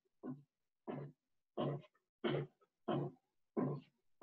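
An animal calling in an even series of short calls, about six over four seconds.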